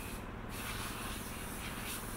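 Steady outdoor ambient noise: an even hiss over a low, uneven rumble, with no distinct event.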